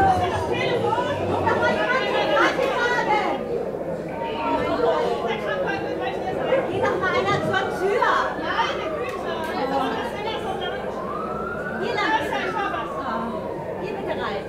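Theatre audience murmuring and chatting in the dark. A siren-like wail rises and falls about eight seconds in and again from about eleven to thirteen seconds.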